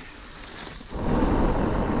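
Mountain bike rolling along a forest trail, quiet for the first second. About a second in, a loud steady rush of wind on the camera microphone and tyre rumble on gravel sets in.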